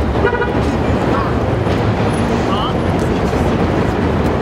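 City street traffic noise with a short car horn toot just after the start.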